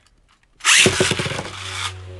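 Beyblade launcher pulled about half a second in, a loud whirring zip lasting just over a second, then the launched Beyblade spinning in a plastic stadium with a steady hum.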